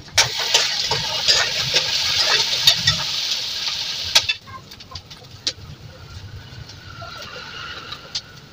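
Food frying in hot oil in a kadhai on a gas stove: a loud sizzle for about the first four seconds that then drops off suddenly to a faint sizzle, with a few single knife taps on a chopping board.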